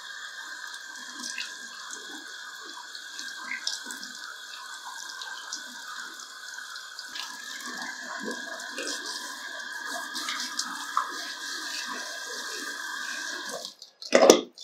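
Water spraying steadily from a handheld salon shower head onto a woman's forehead and hair and running off into the shampoo basin, with soft sounds of hands rubbing wet skin. The spray cuts off near the end.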